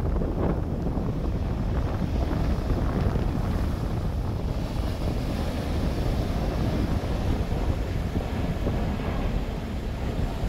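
Strong wind buffeting the microphone, with the rumble of a jet airliner flying overhead beneath it; a higher hiss joins about halfway through.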